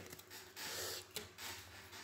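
Faint handling of playing cards on a table: a soft rustle lasting about half a second, then a light tap as a card is put down.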